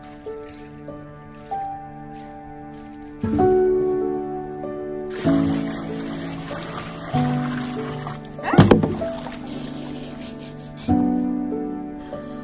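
Gentle background music throughout; about five seconds in, water pours from a metal pot into a bathtub, splashing for about five seconds, with one sharp knock near the end of the pour.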